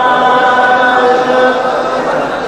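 A man's voice singing a mawwal (improvised sung Arabic poetry) into a microphone, holding one long drawn-out note that dips slightly in pitch about halfway through.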